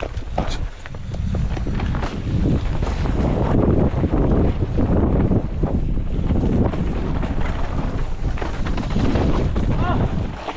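Wind buffeting a helmet-mounted camera's microphone while riding a mountain bike down a dirt forest trail, mixed with tyre rumble and short rattling knocks from the bike over the bumps.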